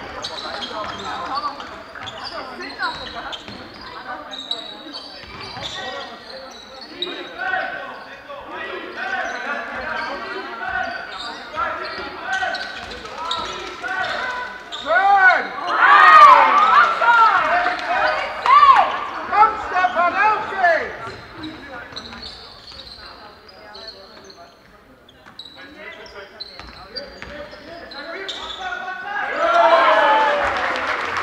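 Basketball game play echoing in a sports hall: a ball bouncing on the court, sneakers squeaking and players calling out. It is busiest and loudest in the middle, during a shot at the basket.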